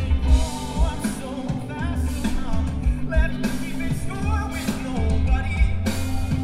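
A live rock band playing a song: electric guitars, bass guitar and drums, with a lead vocal singing over them.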